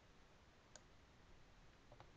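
Near silence: room tone, with a faint click about three-quarters of a second in and a weaker one near the end.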